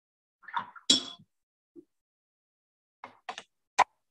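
Watercolour painting gear being handled: a splashy knock about a second in with a brief ring, then a few quick clicks and a sharp clink near the end as a ceramic palette dish is set down and a brush is worked against it.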